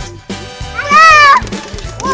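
A peacock gives one loud, cat-like wailing call lasting about half a second, its pitch rising and then dipping slightly, over background music.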